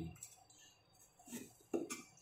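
Quiet cutting at a wooden board: faint scrapes and taps of a Chinese cleaver slicing fish skin from a fillet, with two short murmured vocal sounds in the second half.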